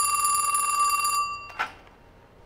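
Telephone bell ringing as a dialled call through a step-by-step exchange connects to the called line. It is one steady ring that stops about a second in.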